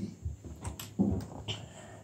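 Small plastic toy pieces being handled on a wooden tabletop: a few light clicks and taps, the strongest about a second in.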